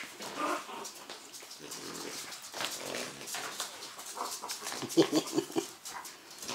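Three-week-old French bulldog puppies making short, small vocal sounds on and off, loudest in a quick run of calls about five seconds in.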